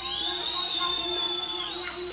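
Electric guitar sustaining a very high, whistle-like note that bends up into pitch and holds, dips and bends back up near the end, over quieter held low notes.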